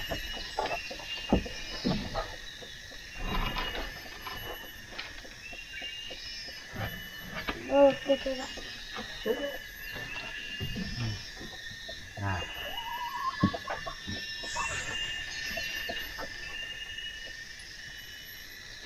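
Bamboo poles knocking and clattering now and then as a rafter frame is handled and fitted, over a steady high-pitched drone of forest insects.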